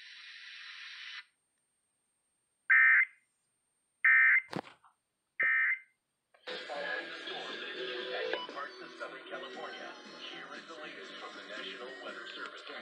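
Emergency Alert System audio through a radio's speaker: a second of static hiss, then three short digital data bursts about 1.3 s apart, the end-of-message tones that close an alert. About six seconds in, the radio's regular program of speech and music comes back.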